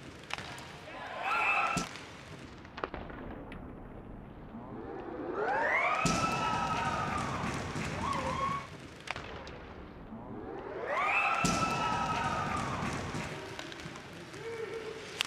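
A siren sounds twice right after a goal, each time rising in pitch, holding for about two seconds, then falling away. A few short knocks come before it.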